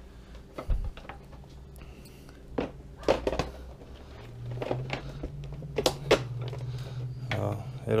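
Plastic tail fairing of a ZX6R being pressed and worked into place on the bike by hand: scattered clicks and knocks of plastic against plastic and frame, with the sharpest ones about three and six seconds in.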